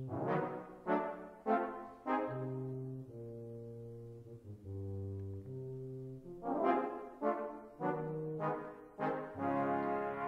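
Brass band score played back from notation software: held chords broken by short, accented brass chords, the slightly dissonant interjections that stand for the storm breaking into a triumphant A-flat major hymn tune.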